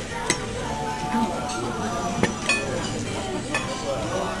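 A few sharp clinks of dishes or cutlery, about four, over a steady room background of murmured voices and music.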